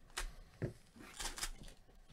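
Foil trading-card pack wrapper crinkling and rustling as the pack is torn open and the cards are slid out, in a few short bursts with a soft knock between them.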